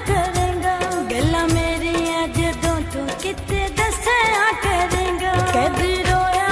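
A Punjabi song plays: a singer's voice winds through ornamented, wavering notes over a steady drum beat and bass.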